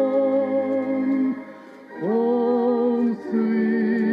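A slow gospel song sung with accompaniment, in long held notes, with a short pause between phrases about a second and a half in.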